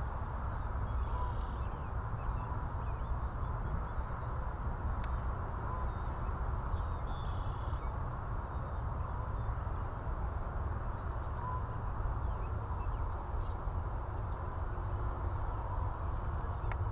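Steady low outdoor rumble with birds chirping faintly over it.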